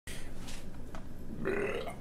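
A man's burp, about half a second long, about a second and a half in, after some low room noise.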